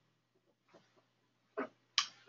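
Near silence for most of the moment, then one short, soft voice-like sound about one and a half seconds in, just before speech starts again.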